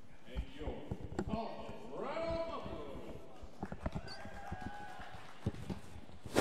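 A distant voice in the rink, over a steady background, with scattered sharp knocks and clacks.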